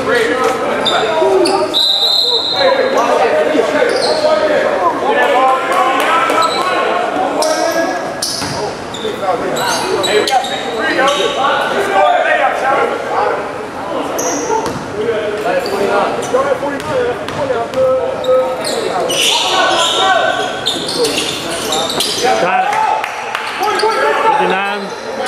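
Basketball bouncing on a hardwood gym floor, with people talking throughout and everything echoing in a large gym.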